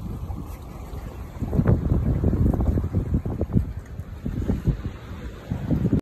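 Wind buffeting the microphone in uneven gusts, with many irregular low bumps and thumps from about a second and a half in.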